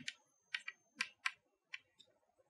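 Chalk clicking and tapping against a chalkboard as words are written: about seven short, sharp clicks at uneven intervals.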